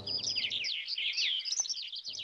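Small birds chirping: a quick, continuous run of short, high notes.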